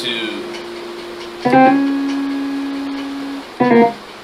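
Keyboard playing a drop-2 voicing on the 6 chord: a quick grace-note slide into a chord about a second and a half in, the chord held, then another short chord near the end.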